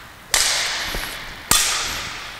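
Badminton racket striking a shuttlecock twice in overhead forehand clears, about a second apart. Each hit is a sharp crack that echoes and dies away slowly in the hall.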